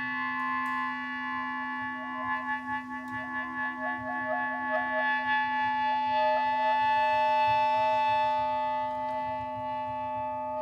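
Two clarinets holding long, steady tones over a low sustained drone. About two seconds in, one line begins to waver in quick flutters, then settles into a held note about six seconds in.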